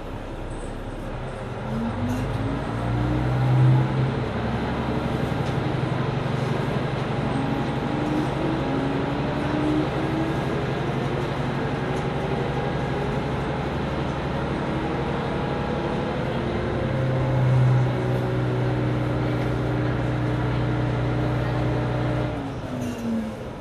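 Mizushima Rinkai Railway MRT300 diesel railcar's engine revving up about two seconds in and then pulling under steady power, with a second rise in engine note near the end.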